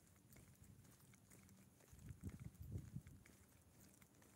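Near silence while walking with a phone: faint footsteps on a concrete sidewalk, with a brief low rumble on the microphone about two seconds in.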